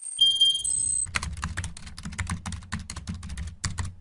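Sound effects: a brief high electronic chime, then a rapid run of keyboard-typing clicks, about eight a second, over a low rumble.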